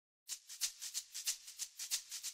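Intro music opening with a shaker (maraca) playing alone: a quick, even rhythm of about six soft strokes a second, starting after a moment of silence.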